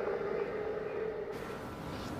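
MRI scanner running with a steady droning hum, fading out in the second half.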